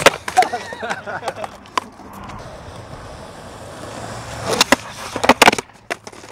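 Skateboard popping, then its wheels rolling over concrete, then a slam near the end: a cluster of loud clattering impacts as the board and the skater hit the pavement.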